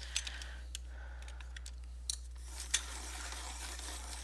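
Coloured pencil being turned in a small hand-held sharpener: faint scraping with scattered small clicks.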